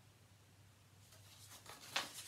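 Quiet room tone with a faint steady low hum, and a soft click near the end.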